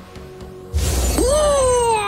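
Cartoon launch sound effect: a sudden crashing burst with a deep rumble about three-quarters of a second in, then a long shouted "hwaap!" that rises and slowly falls in pitch, over background music.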